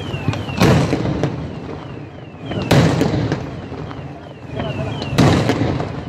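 Aerial fireworks shells bursting: three loud booms about two to two and a half seconds apart, each ringing on in echo, with smaller cracks between them. A short, high falling chirp repeats steadily throughout.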